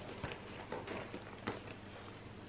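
Faint rustling and a few soft clicks as a wallet is slid into a small handbag, going in without forcing.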